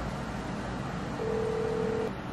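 Steady background noise of a room, an even hiss and hum, with a single steady beep-like tone that starts a bit past halfway and lasts just under a second.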